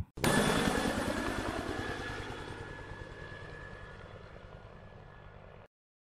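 Outro sound effect: a noisy sound with a fast low flutter that starts abruptly, fades steadily over about five seconds, then cuts off suddenly.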